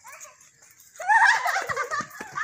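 Children giggling and squealing while running, loud and high-pitched, starting about a second in, with running footsteps thudding beneath.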